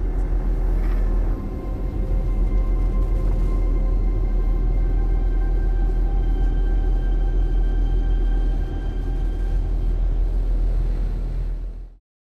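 A low, steady droning rumble with several held tones above it, fading out just before the end.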